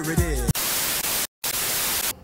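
Music with a singing voice cuts off about half a second in and gives way to loud, even television static hiss. The static is broken by a brief silent gap near the middle.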